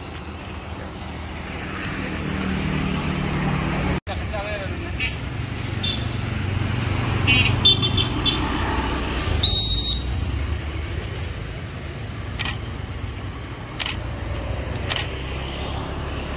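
Road traffic with motorbikes and cars passing close by, engine hum swelling as a vehicle approaches in the first few seconds. A short, high horn beep sounds about ten seconds in.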